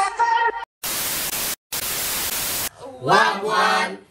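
Burst of TV-style static hiss, about two seconds long with a short break in the middle, after a song cuts off. Loud excited voices start up near the end.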